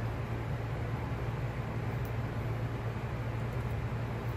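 Steady low hum with an even hiss, constant throughout: workshop background noise from a running machine or fan, with no distinct sounds of the tape being cut.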